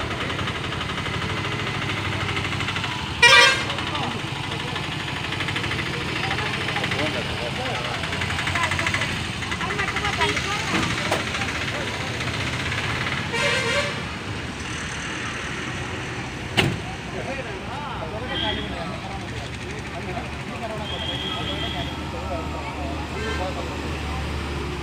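A vehicle horn tooting twice: a short, loud toot about three seconds in and another slightly longer one about thirteen seconds in, over voices and street noise.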